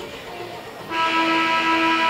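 Arena horn sounding a long, steady blast that starts abruptly about a second in, over faint arena music; it signals the end of the media timeout.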